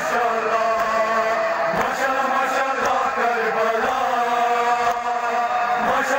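Men chanting a nawah, a Shia lament for Karbala, in long drawn-out notes, carried over a loudspeaker.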